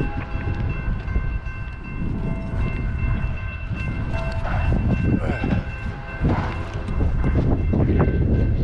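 Horn of an approaching Norfolk Southern freight locomotive sounding a steady, held chord of several tones, over a continuous low rumble.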